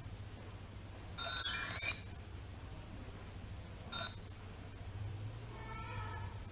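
Cartoon-style sound effects. A bright, jingling chime rises in pitch for under a second, about a second in. A short ding follows at about four seconds. A faint tone starts near the end.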